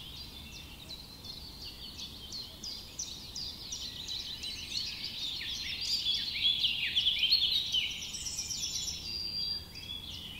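A dense chorus of small birds chirping, many short, high, quick chirps overlapping at once. It builds to its loudest about six seconds in and eases off just before the end.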